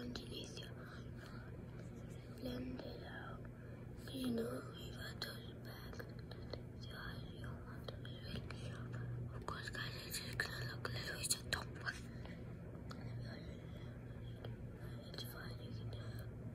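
A girl whispering and murmuring softly, with a few short voiced syllables in the first few seconds, over a steady low hum. Scattered faint clicks and rustles come through, most of them about ten to eleven seconds in.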